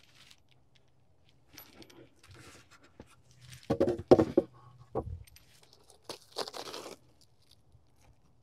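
A wooden beehive inner cover is lifted off and set aside with scrapes and a few knocks near the middle. Then a sheet of reflective bubble-foil insulation is peeled up off the hive, crinkling.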